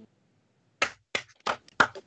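Hand claps, sharp separate slaps about three a second, starting about a second in after a brief dead silence.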